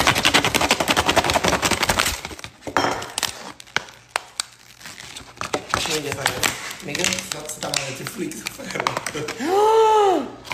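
Stiff clear plastic packaging crinkling and crackling as it is wrenched and torn open by hand: a dense crackle for the first two seconds, then scattered sharp cracks. Near the end a loud drawn-out vocal exclamation.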